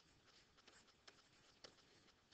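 Near silence, with a few faint taps of a stylus writing on a tablet screen.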